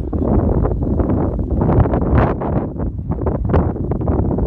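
Wind buffeting the microphone: a loud, uneven rumble with gusts.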